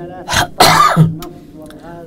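A man coughing to clear his throat close to a desk microphone: a short first burst, then a louder cough lasting about half a second.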